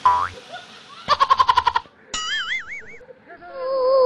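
Cartoon-style comedy sound effects: a quick rising whistle, then a rapid run of about a dozen pulses, then a wobbling boing. A held, wavering note starts about three and a half seconds in.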